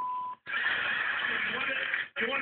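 A short steady censor bleep tone, then about a second and a half of dense crowd noise from a TV audience, heard from a television's speaker.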